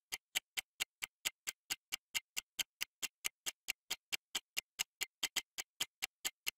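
Countdown timer sound effect ticking evenly, about four to five sharp ticks a second, with silence between the ticks.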